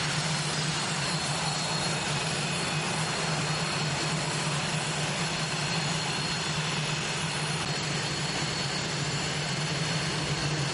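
The F-5E Tiger II's twin General Electric J85 turbojets running steadily at low ground power, a constant roar with a high whine over it.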